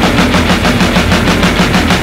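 Raw hardcore punk recording: the band plays a fast, evenly pulsed passage of about eight hits a second.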